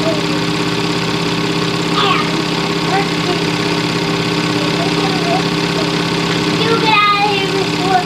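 A steady mechanical hum that never changes in pitch, with voices talking faintly over it now and then.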